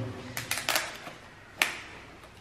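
A few sharp clicks and crackles from fingers working at the wrapping of a plastic LOL Surprise Under Wraps capsule as a layer is opened, the sharpest about a second and a half in.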